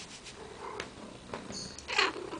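Domestic cat purring close by, with a few soft clicks, the loudest near the end.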